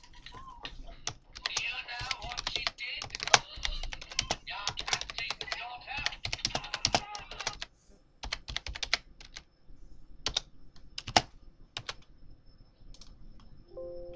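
Computer keyboard being typed on in quick runs of keystrokes, then a few scattered clicks. Near the end comes a short Windows alert chime as an error box pops up.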